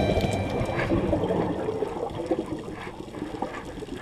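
Underwater bubbling and rushing from a scuba diver's exhaled bubbles and the water around the camera, with soft surges and slowly fading.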